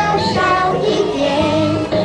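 A group of young children singing a song together over musical accompaniment.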